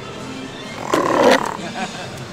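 A person's loud, harsh roar-like yell about a second in, lasting about half a second, typical of a scare actor growling at guests, over background music.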